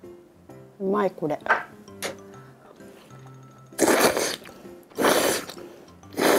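Udon noodles being slurped: two loud slurps about four and five seconds in, over steady background music, with a brief vocal sound near the start.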